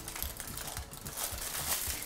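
Aluminium foil crinkling and rustling in irregular crackles as it is folded over and pressed around a filled minced-meat patty by gloved hands.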